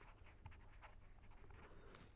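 Faint sound of a pen writing on paper, in short strokes.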